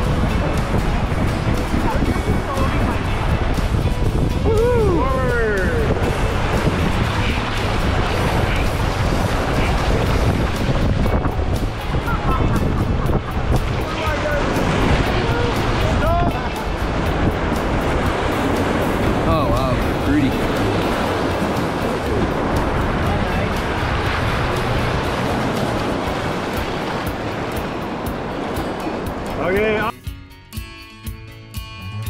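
Whitewater rapids rushing loudly around an inflatable raft, with wind buffeting the microphone. A few brief shouts rise above the water noise.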